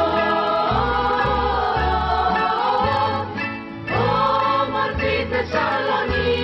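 Student choir singing a rebetiko song in Greek in unison, over a rebetiko band of bouzoukis, guitars and double bass. The voices pause briefly a little past three seconds, then start a new phrase.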